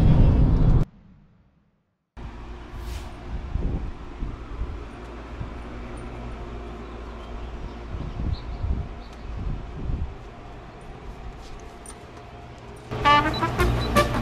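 A loud sound cuts off under a second in, and about a second of silence follows. Then comes a steady, low outdoor background rumble with a few light knocks and ticks. Near the end a tune of clear, separate notes begins.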